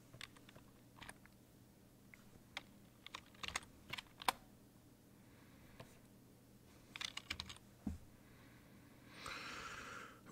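Computer keyboard keys tapped in scattered short bursts of a few keystrokes, with pauses between.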